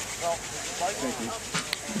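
A person blowing into a moss tinder bundle that holds a friction-fire ember, a steady breathy rush of air, with faint voices in the background.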